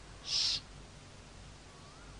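A man's short breathy hiss about a quarter second in, a breath drawn between phrases of speech, then quiet room tone.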